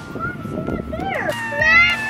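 Several children scream together in a long held cry that starts a little past a second in; before it, children talk quietly.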